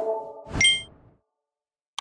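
Edited intro sound effects: the tail of a swoosh with a short low tone, then a bright ding about half a second in that rings briefly. A quick double click comes at the very end.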